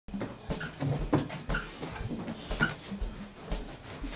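A couple kissing, with breathy murmurs and short moans and soft low thumps about twice a second.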